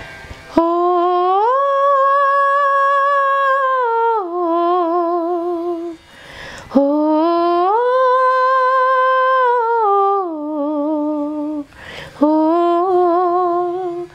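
A woman sings a wordless, unaccompanied melody in three long phrases with short breaths between. Each phrase climbs to a high held note and sinks back to a lower note with vibrato.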